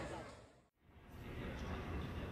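Street crowd ambience with voices fades out to silence within the first second. A quieter, steady background sound then fades back in.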